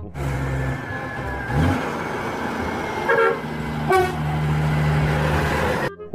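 Semi-trucks driving past with their diesel engines running in a steady low drone, and short horn toots about three and four seconds in.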